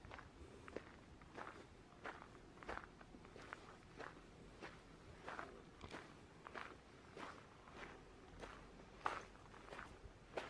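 Faint footsteps crunching on gravel at a steady walking pace, about three steps every two seconds.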